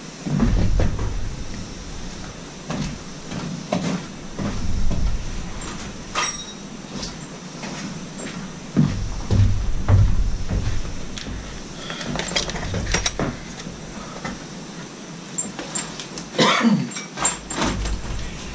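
Irregular knocks, clicks and light metallic clatter of tools and engine parts being handled on a workbench, with a few low thuds, and a quick run of clicks near the end.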